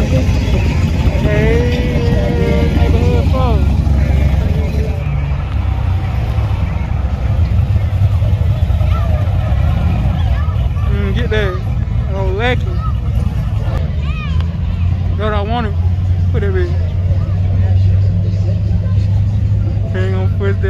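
A car engine running with a steady, deep rumble, while people's voices call out over it now and then.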